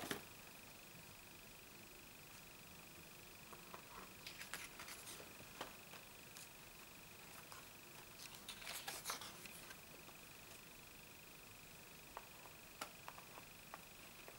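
Faint rustles of paper pages being flipped and handled on a spiral-bound desk calendar, twice, with a few soft clicks near the end. A faint steady high-pitched tone runs underneath.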